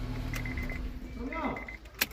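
A car engine runs with a steady low hum and is switched off with the key about half a second in. Two short runs of rapid, high electronic beeps from the dashboard chime follow.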